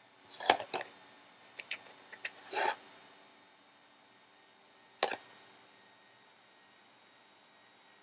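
Light clicks and short scrapes from a small eyeshadow palette being handled while shades are swatched: several in the first three seconds, then one sharp click about five seconds in.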